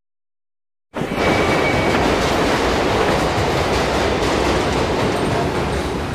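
Silence for about the first second, then the steady rumble of a train running on rails cuts in abruptly and holds, easing off slightly near the end.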